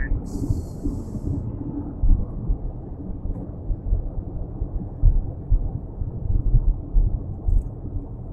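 Low, steady rumble of road and engine noise inside a car's cabin at freeway speed, unevenly loud, with a brief hiss in the first second.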